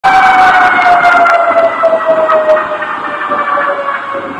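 Emergency-vehicle siren sounding one steady tone that slides slowly down in pitch, over street noise, with a few sharp clicks in the first half.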